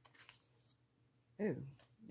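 Faint rustling and handling of a pre-opened collagen sheet face mask and its packet, then a brief spoken "Oh" about a second and a half in.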